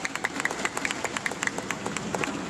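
Sports shoes squeaking and scuffing on an indoor badminton court floor as players move about, with several short, irregular squeaks and taps a second.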